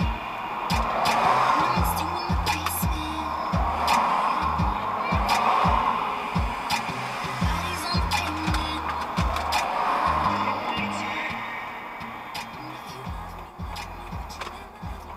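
Music with a steady bass beat, about two beats a second, playing on the car's stereo inside the cabin; it gets a little quieter near the end.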